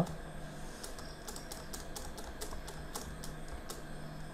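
Computer keyboard being typed on: a run of light, irregular key clicks, several a second, as text in a box is deleted and retyped.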